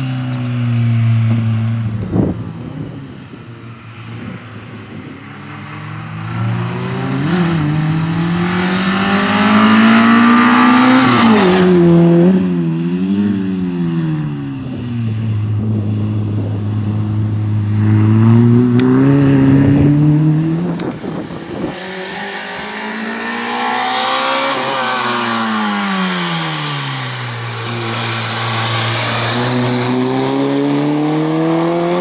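Peugeot 106 rally car's four-cylinder engine revving hard through a cone slalom, its pitch climbing and dropping again and again through gear changes and braking, with a sharp crack about two seconds in and another later on.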